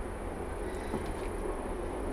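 Steady background noise in the room: a low rumble with a faint hiss, no distinct events.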